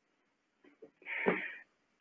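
A single short, faint breath drawn in by the presenter about a second in, a pause before he speaks again.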